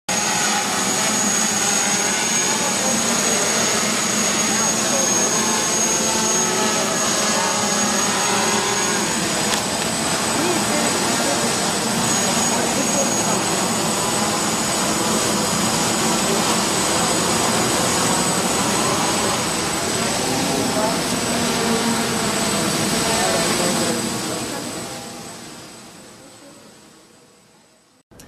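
Multirotor quadcopter flying, its electric motors and propellers giving a steady high whine, with people talking in the background. The sound fades out over the last few seconds.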